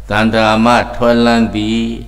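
A Buddhist monk's voice intoning in a chant over a microphone, holding steady notes in about three drawn-out phrases.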